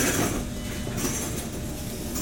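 MAN Lion's City CNG city bus running at low speed, heard from the driver's cab, with a brief louder hissing rush at the start.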